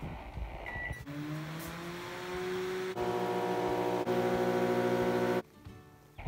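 Microwave oven being started: a keypad beep, then a motor humming and rising slowly in pitch as it spins up, and about three seconds in a louder steady electrical buzz as the high-voltage section switches on, until it cuts off suddenly. This is an oven that runs and makes a very loud noise but does not heat, a fault the owner puts down to the magnetron.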